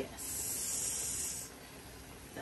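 A soft knock, then a high hiss lasting just over a second from a hot, steaming frying pan of stew.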